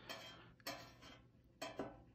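Faint, light clinks of a thin metal spatula touching a stainless steel pan: one at the start, one about halfway, and a quick pair near the end.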